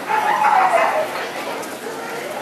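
A dog's whine, falling in pitch and lasting under a second, over the chatter of a hall.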